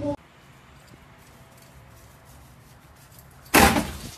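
Faint room tone, then a single loud, short bang about three and a half seconds in that dies away within half a second.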